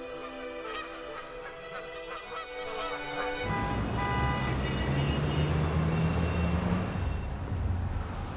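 Canada geese honking as they take off from water, over music with long held notes. About three and a half seconds in it cuts to loud city street traffic noise with a low engine drone.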